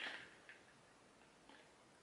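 Near silence: faint room tone with two soft ticks about a second apart.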